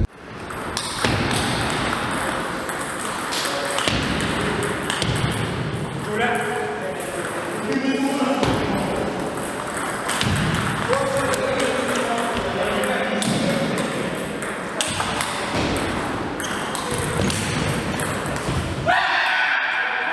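Table tennis ball clicking back and forth off the paddles and the table in quick rallies, with people talking in the background.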